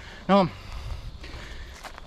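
A runner's footfalls on a dirt path, heard as a low rumble under a handheld camera.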